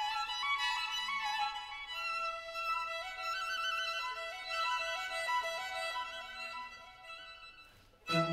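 Music: a slow violin melody, with a second lower line joining in, the notes wavering slightly, fading out near the end.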